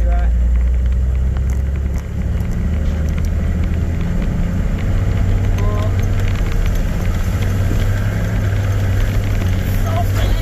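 Four-wheel-drive vehicle driving on a rough, gravelly dirt track, heard from inside: a steady low engine and tyre drone with a constant patter of small rattles and clicks. The drone dips briefly about two seconds in.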